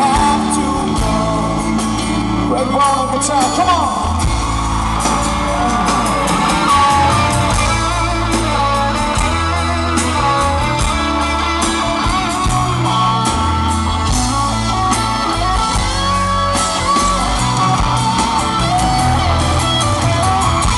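Live pop band performance: male lead vocal singing over guitar and bass, loud and continuous, picked up by an audience camera.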